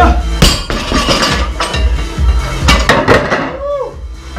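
Background music with a steady bass line, over several sharp metallic clanks from a plate-loaded barbell with an iron weight plate as it is rowed and set down on the floor.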